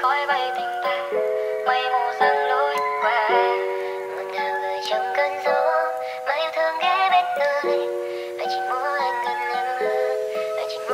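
Sped-up Vietnamese pop song: a high, pitch-raised vocal melody over held synth chords that change about once a second.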